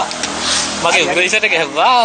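Speech: a man talking animatedly inside a car, with low car noise behind his voice.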